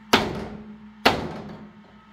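Two blows of a mallet on a wooden board, about a second apart, each a sharp thud that dies away. The board is being struck to crush model buses and cars beneath it.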